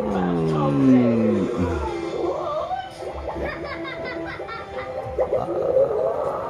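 A TV cartoon soundtrack: a gurgling sound effect that falls in pitch over about two seconds, then background music with cartoon voices.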